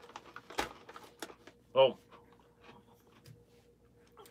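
A few sharp crackles and clicks in the first second or so: a bag of Dot's pretzels rustling as it is set down on a table, and a hard pretzel crunching as it is chewed.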